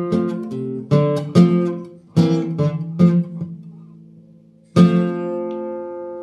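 Nylon-string classical guitar playing the closing chords of a song: several chords struck in the first three seconds, a short fading pause, then a final chord strummed near the five-second mark and left to ring out.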